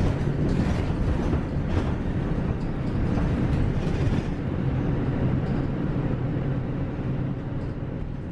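Kyoto City Bus heard from inside while driving: a steady low engine hum under road noise, with a few brief rattles.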